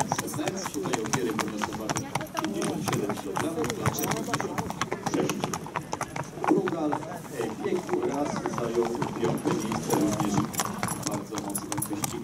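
Hooves of thoroughbred racehorses clip-clopping as the horses are led past at a walk, many irregular hoof strikes overlapping.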